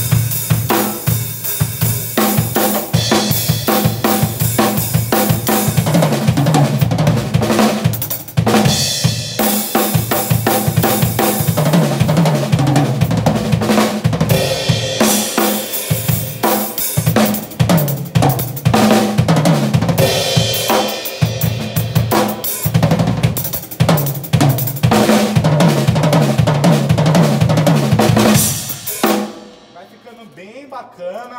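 Acoustic drum kit played in a fast, dense gospel-chops lick: quick runs on snare and bass drum with hi-hat and cymbal hits. It stops short about a second before the end.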